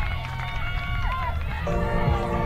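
High voices shouting and cheering after a goal, over a low rumble. A music sting with steady held tones comes in near the end.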